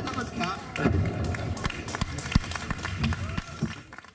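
Voices talking in short bursts, no music playing, with scattered sharp clicks and knocks among them; the sound fades near the end.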